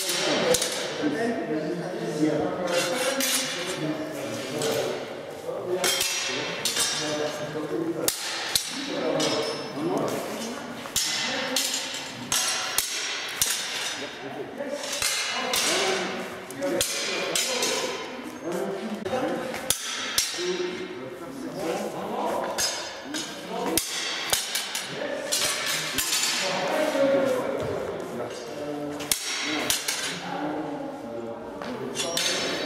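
Steel training longswords clashing in free sparring: many sharp knocks and clinks of blade on blade at irregular intervals, over a background of indistinct voices in a gymnasium.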